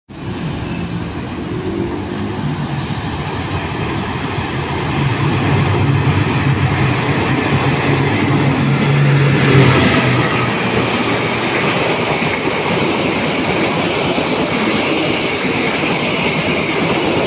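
Diesel locomotive hauling a parcel train through a station: its engine drone grows as it approaches and is loudest about nine to ten seconds in as it passes. The steady rumble and clatter of wheels on the rails carries on as the cars roll by.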